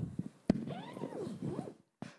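A sharp single click from a microphone being switched on, followed by about a second of faint, indistinct voice sound in the chamber, its pitch rising and falling.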